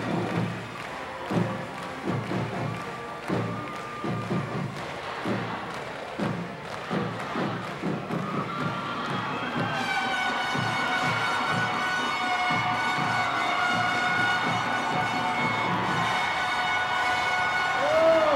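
Marching band playing outdoors: several seconds of drum strokes, then a long chord held from about halfway through to the end, with a crowd cheering.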